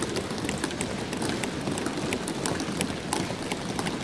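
Many members thumping their desks in applause, a dense steady patter of knocks from across the chamber.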